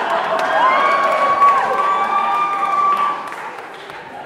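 Audience clapping and cheering, with one voice whooping: it slides up, holds a high note for about a second and drops. The applause dies down near the end.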